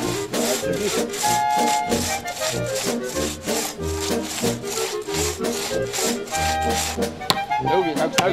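Two-man crosscut saw being drawn back and forth through a conifer trunk, heard under background music. A few sharper knocks come near the end.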